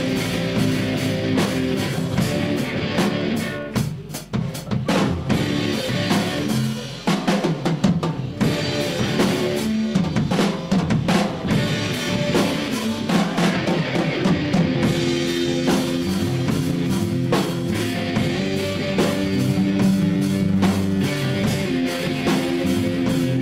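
Rock band playing loud in a rehearsal room: electric guitars over a drum kit. Between about 3 and 8 seconds in, the sustained guitar sound thins out and separate drum hits come forward, then the full band comes back in.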